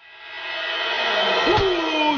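A background sound fades in from silence and builds, and about one and a half seconds in a man's voice starts calling out loudly over it.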